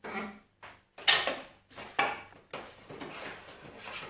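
A plastic drone controller being lifted out of its cardboard box: a few scrapes and knocks of packaging, the sharpest about one and two seconds in, then a softer rustle.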